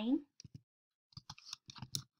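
Computer keyboard being typed on: a quick, irregular run of light key clicks as a few characters are entered.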